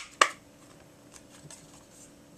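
Plastic toy being handled and turned in the hands: one sharp click a fraction of a second in, then a few faint taps and rubs.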